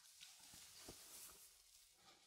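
Near silence with faint rustling of clothing and a few small ticks as a suit jacket is unbuttoned and taken off.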